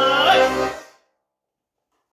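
Garmon and bayan (Russian button accordions) holding the song's final chord, which fades out within the first second.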